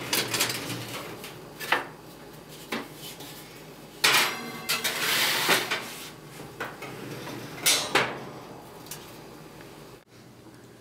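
Metal baking sheet and oven racks knocking and clattering as the tray goes into the oven, with a loud clatter about four seconds in that runs into a quick scraping rattle, and a few more sharp metal knocks.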